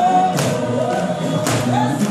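Gospel singing by a group of voices in a revival worship service, with two sharp percussive hits about a second apart.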